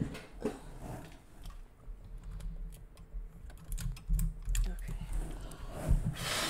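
Light, irregular clicks and taps of hands working at a desk, with a few low thumps from handling near the microphone.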